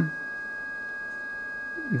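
Steady sine test tone of about 1650 Hz from the loudspeaker, output of two GK IIIb speech scramblers in series, both switched on: the second unit's pitch inversion undoes the first, so the output pitch matches the input tone. A fainter steady second tone sits below it.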